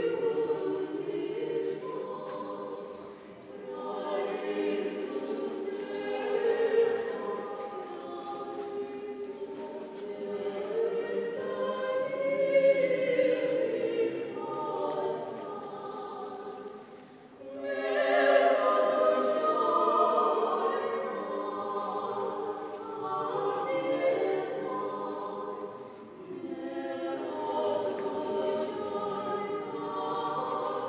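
Small mixed vocal ensemble of women's voices and one man's voice singing unaccompanied sacred choral music in harmony. The phrases are broken by short pauses, the clearest about halfway through.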